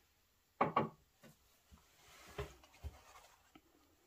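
Paper towel rustling and rubbing as a freshly inked fountain pen is blotted on it. There is a short louder rustle about half a second in, then a few light knocks on the tabletop.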